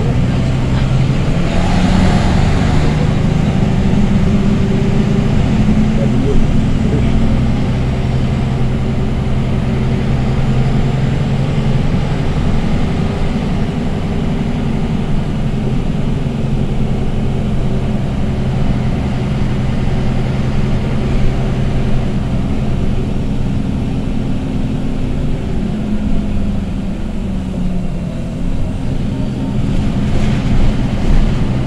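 Interior sound of a MAN NG313 articulated bus on the move: its MAN D2866 six-cylinder diesel (310 hp) and ZF 5HP592 five-speed automatic gearbox running as a steady drone heard from the passenger cabin, with the engine note shifting slightly in pitch now and then.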